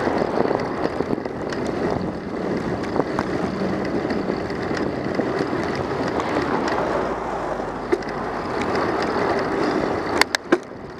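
Steady rolling rumble and hiss of a bicycle's tyres on asphalt, with scattered small clicks and rattles from bumps in the road.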